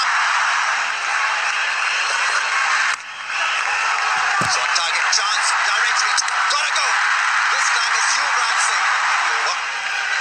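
Large stadium crowd cheering and shouting, a dense steady roar of many voices, with a brief drop about three seconds in.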